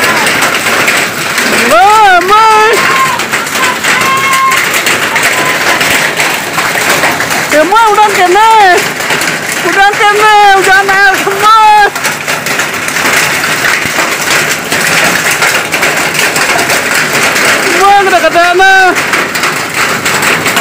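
Hail and rain falling steadily on a concrete yard, a constant hiss. High-pitched voices call out several times over it.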